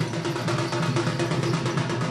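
Singhabadya folk drum ensemble from western Odisha playing fast, dense rhythms on shoulder-slung barrel drums (dhol), over a steady held tone.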